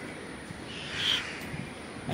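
A single short bird call about a second in, over faint outdoor background noise.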